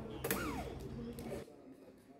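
Corded electric drill running on the screws of a speaker cabinet's metal front grille. Its motor whine falls in pitch about a third of a second in, and the sound cuts off sharply about a second and a half in.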